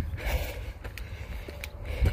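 Footsteps in sandals crunching and scraping on loose, rocky gravel while climbing a steep track: a few short crunches and clicks over a low steady rumble.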